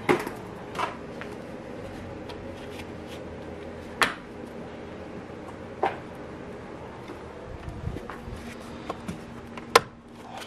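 Plastic push-pin clips being pressed by hand into the top of a Jeep Wrangler JL grille, giving a handful of sharp clicks at irregular gaps, the loudest near the end, with light handling noise of plastic parts between them.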